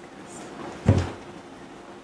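Microphone handling noise: one sharp thump about a second in as a handheld microphone is set into its stand.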